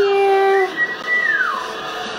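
Music playing from a television broadcast of the New Year's celebration: a held note for the first part, then a high tone that slides down about halfway through.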